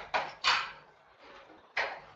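Marker pen on a whiteboard: two short scratchy strokes in the first half-second, then another just before the end.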